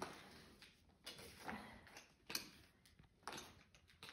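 Near silence with a few faint, short clicks or taps, irregularly spaced about a second apart.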